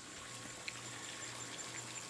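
Faint outdoor background during a pause: a low hiss with a steady thin high-pitched tone throughout, and one faint click about two-thirds of a second in.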